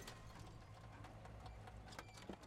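A minivan pulling slowly into a driveway: a steady low engine hum under a stream of small crackles from the tyres rolling over grit.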